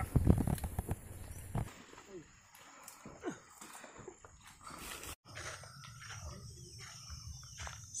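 Quiet outdoor sound with faint, distant voices and a few low thumps and scuffs during the first second or two. About five seconds in it changes abruptly to a steady, high-pitched insect chirring with faint voices under it.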